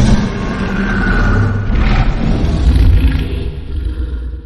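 Godzilla creature sound effect from the 2014 film: one long, deep, rumbling roar with a rasping upper layer, beginning to fade near the end.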